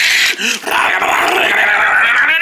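A person's voice making a harsh, unpitched growl-like noise for about a second and a half, after a few short sounds.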